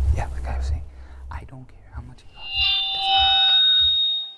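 A low rumble with faint scattered sounds, then a sustained electronic tone of several steady pitches sounding together from about two and a half seconds in, the loudest sound, cutting off shortly after.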